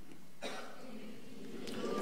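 A pause in a man's talk: low steady room noise through the microphone, with one faint click about half a second in.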